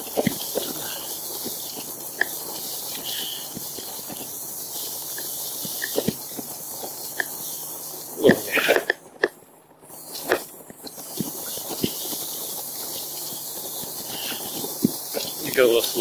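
Steady hissing swish of tall grass brushing against an e-bike and the rider's legs while riding slowly through a field, with scattered knocks as the bike jolts over rough ground. The hiss briefly drops away a little past halfway.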